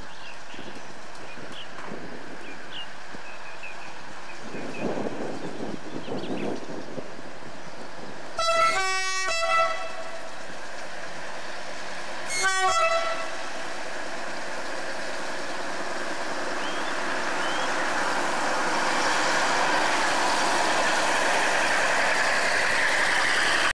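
Narrow-gauge train sounding its horn at a level crossing: a long blast that changes pitch partway through, then a short blast a few seconds later. Afterwards a rising rush of noise as a locomotive draws near.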